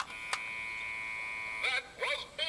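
A steady, beep-like tone of several fixed pitches holding for about a second and a half, with a single click shortly after it starts; it stops abruptly.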